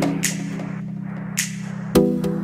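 Background music: a held low chord with two light cymbal-like hits.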